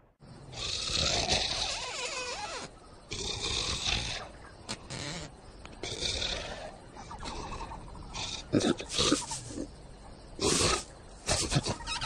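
Cartoon lion snoring in his sleep, one long noisy breath every two to three seconds. A few short, sharp sounds come near the end.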